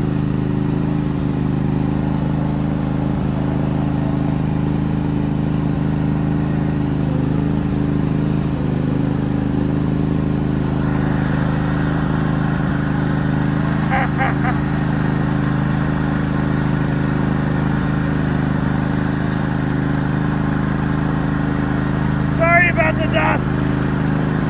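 Motor of a steampunk roadster running steadily as the car rolls slowly, an even low hum with no revving. Brief voices come in about midway and again near the end.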